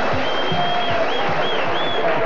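Theme music with a steady drum beat, about three hits a second, over a studio audience clapping and cheering. A long high whistle sounds through the middle of it.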